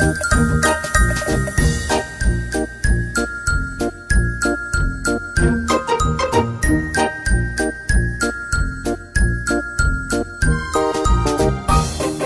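Background music: a high, bright melody of short notes over a steady beat.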